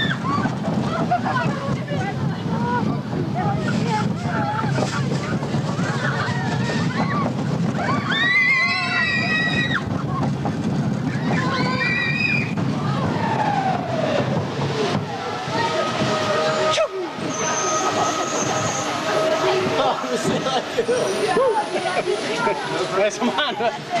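A roller coaster train running on its track with a steady rumble, while riders yell and shriek now and then. About fifteen seconds in, the rumble eases as the train slows into the station, and steady high tones and voices come in.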